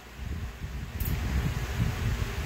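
Pedestal fan's air buffeting the microphone: an uneven low rumble over a faint steady hiss, with a small click about a second in.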